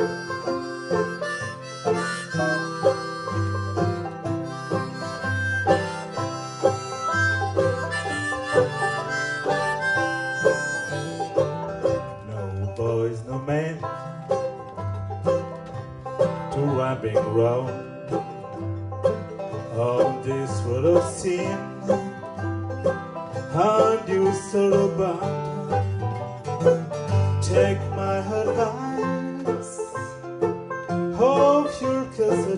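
Live acoustic string-band music: two banjos picking and an acoustic guitar playing an alternating bass under a harmonica lead. The harmonica holds long chords at first, then plays sliding, bent notes from about halfway.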